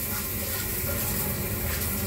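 Handheld shower head spraying a steady stream of water onto an adenium's roots, rinsing the old soil away.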